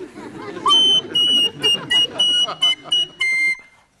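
Soprano recorder played shrilly: a quick string of about eight short notes on one high squeaky pitch, then a lower held note near the end.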